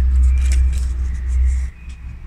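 A steady low rumble that drops away near the end, with faint rustling and light ticks of artificial plant leaves being handled against a wooden trellis.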